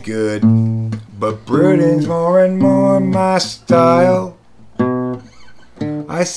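A man singing while playing an acoustic guitar, holding long sung notes; the voice drops out briefly about two-thirds of the way through before the next phrase.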